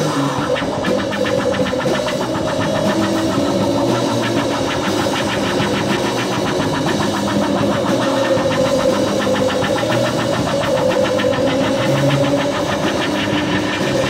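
Instrumental passage of late-1960s psychedelic rock: a heavily distorted, buzzing electric-guitar drone holds one note over a rapid, fluttering pulse, with no singing.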